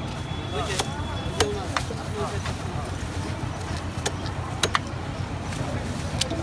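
Large carp being cut on a bonti, a fixed upright curved blade: a handful of sharp clicks and cracks as the blade works through flesh and bone, in two clusters, one about a second in and one four to five seconds in. Under it a steady low street rumble with faint voices.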